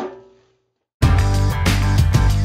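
A brief silence, then music with a strong bass line and a steady beat starts abruptly about a second in.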